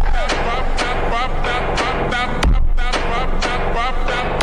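Background music with a steady beat and a deep bass hit about two and a half seconds in.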